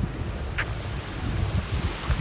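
Wind buffeting the microphone with a low, uneven rumble over a steady rush of wind and sea.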